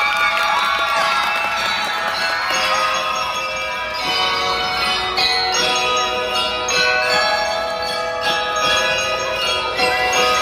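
Glockenspiels (bell lyres) played by a school ensemble, a bright melody of many sustained ringing metallic notes.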